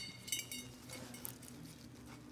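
A metal dump-tube flange ringing out after hitting a concrete floor, the ring fading over about a second. Then come a few faint small clinks and scrapes as it is picked up off the floor.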